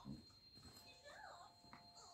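Near silence, with faint, brief high-pitched voice sounds rising and falling in the background.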